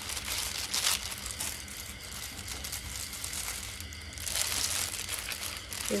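Hand tossing sliced lemongrass, herbs and raw sliced beef together in a plastic bowl: a soft, uneven rustling, louder about a second in and again between about four and five and a half seconds.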